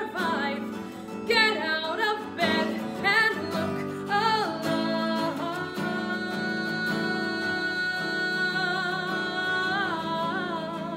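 A woman singing solo to acoustic guitar accompaniment. She sings several short phrases, then holds one long note from about halfway through.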